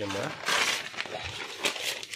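A short burst of rustling noise, then lighter crinkling with a couple of sharp clicks near the end.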